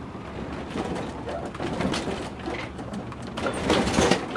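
Inside an Airstream travel trailer being towed slowly: a steady clatter of small knocks and rattles, with brief squeaks and creaks, as the trailer's cabinets, doors and fittings bounce around. The knocks get louder near the end.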